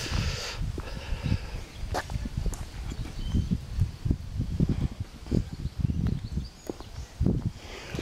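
Handheld camera microphone picking up a walker's footsteps and handling noise: irregular low thuds, a few a second, with a faint rustle.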